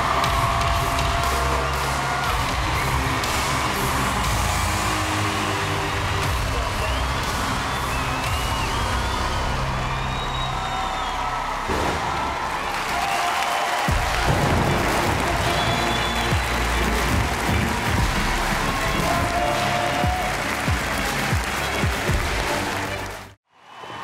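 Music playing with audience applause and cheering, ending suddenly about a second before the end.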